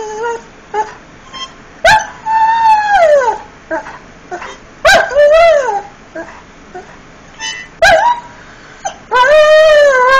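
Irish Setter howling, its 'singing' coming in long drawn-out calls that rise and fall in pitch. There are three long howls, about two, five and nine seconds in, with short whines between them.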